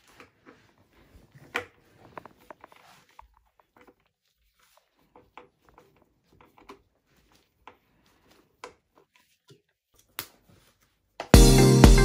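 Faint, scattered clicks and taps of a hand screwdriver driving screws into the plastic frame of a baby soother, the sharpest tap about a second and a half in. Loud music with guitar starts suddenly near the end.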